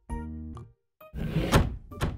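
Cartoon sound effects: a brief held low musical note, then about a second in a noisy whoosh that swells and fades as the scene changes.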